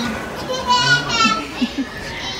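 Young children playing and calling out, with two high-pitched squeals about a second in and a few short shouts after them.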